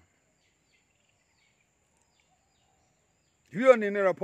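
Near silence for about three and a half seconds, then a man's voice starts speaking near the end.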